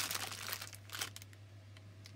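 Clear plastic bag crinkling as hands handle it, busiest in the first second, then dying down to a few faint rustles.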